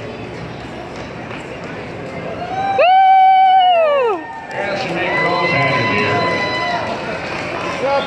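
A person's loud, drawn-out shout, held steady for about a second near the middle and then falling away in pitch. Quieter held calls and voices follow, over a low murmur of the arena.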